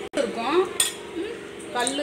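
A metal spoon or ladle clinking against a clay cooking pot as rice is stirred: a couple of sharp clinks about a second apart, over a steady hum.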